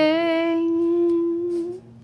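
A woman singing one long held note: her voice scoops up into it, holds it steady for about a second and a half, then fades out.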